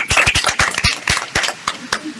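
Audience applauding, the clapping thinning out and fading near the end.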